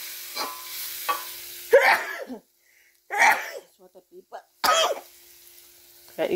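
Spices and aromatics sizzling in a black iron wok as a spatula stirs them. About two seconds in, the sizzle drops away and a person coughs three times.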